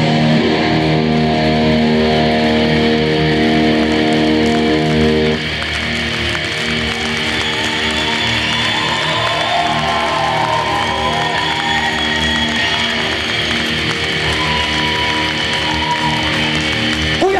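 Live heavy metal band: electric guitars and bass hold a loud, sustained chord that drops away about five seconds in. After that the guitars ring on with slow bending notes, like the drawn-out final chord at the end of a song.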